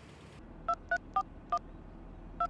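Mobile phone keypad being dialled: four short touch-tone beeps in quick succession, each a slightly different pitch, starting under a second in.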